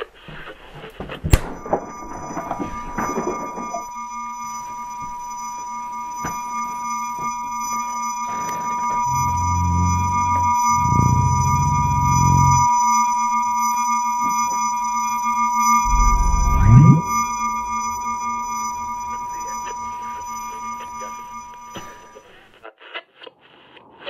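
Synthesized sci-fi sound effect: a sharp click, then a steady high electronic whine that swells in loudness, with two deep rumbles in the middle and a low rising sweep to a loud peak a few seconds before it fades out.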